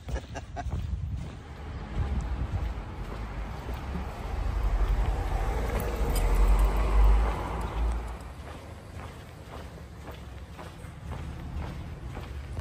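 A car driving past close by, its noise swelling from about four seconds in and fading away after about eight seconds.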